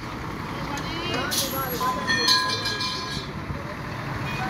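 Bus running along the road: a steady noise of engine and tyres, with voices over it and a brief steady high tone, like a horn, about two seconds in.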